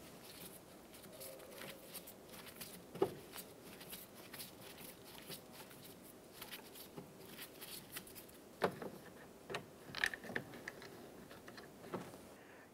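Phillips screwdriver turning screws out of a car's plastic interior door handle: faint, scattered clicks and scrapes, with a few sharper clicks, the loudest about three seconds in.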